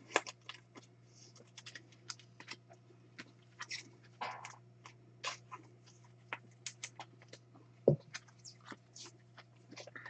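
Faint, irregular clicks and crinkles of trading cards and foil wrappers being handled, with one louder thump just before the end, over a steady low hum.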